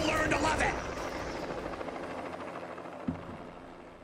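The tail of a news-segment intro's sound effects: a brief voice at the start, then a noise that fades out gradually over about three seconds, with a small click near the end.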